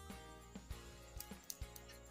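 Faint background music with steady held tones, and a few light clicks near the middle.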